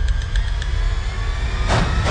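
Low, steady rumbling drone from a horror trailer's sound design, with a hissing swell rising near the end.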